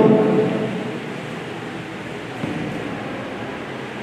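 A man's voice ends in the first half-second, then steady room noise, an even hiss in a meeting room, with a slight brief rise about two and a half seconds in.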